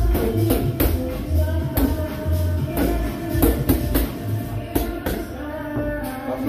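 Punches landing on boxing pads: sharp smacks at an uneven pace, often two or three a second, over gym music with a beat and singing.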